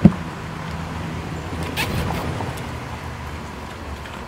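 Pigs eating grain at a wooden feeder, with a low steady sound of feeding, a sharp knock right at the start and a short clatter about two seconds in.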